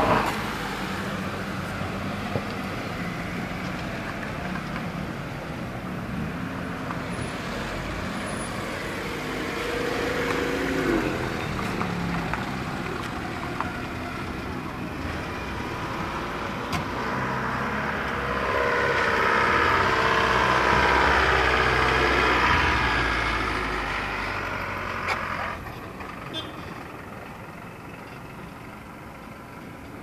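A car's engine and road noise, rising to its loudest about two-thirds of the way through and then fading away near the end, with people's voices mixed in.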